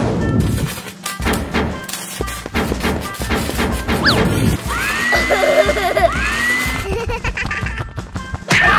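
Cartoon background music with a run of rapid banging and crashing impact sound effects, as of parts being built onto a machine. A quick rising whistle comes about four seconds in, followed by two longer rising tones in the last few seconds.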